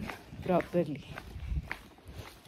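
Footsteps of someone walking while filming on a handheld phone, with low thuds and small clicks of handling, and a short burst of a woman's voice about half a second in.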